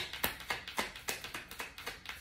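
Tarot cards being shuffled by hand, the deck slapping together in quick light taps, about four a second.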